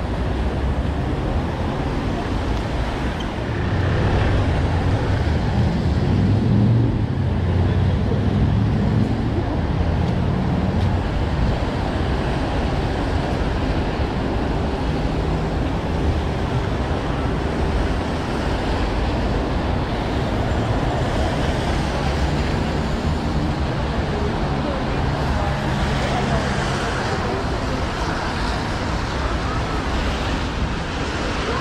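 Road traffic on a wet city street: a steady wash of engines and tyres on the wet road, with a heavier vehicle's low rumble swelling about four seconds in and fading by about twelve seconds.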